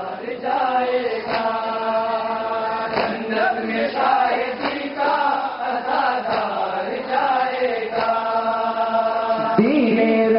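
Men's voices chanting a nauha, a Shia mourning lament, together over microphones and loudspeakers, with a sharp chest-beating slap (matam) every second or two.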